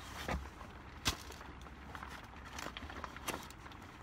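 Newspapers being leafed through and shuffled by hand in a cardboard box: faint paper rustling with a few soft knocks, the sharpest about a second in.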